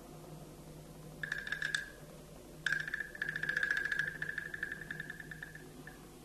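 Scraped high-pitched wooden fish (muyu) giving a rattling run of fast clicks on one pitch. A short rasp comes about a second in, then a longer one lasting about three seconds, like insects chirping. A faint low hum runs underneath.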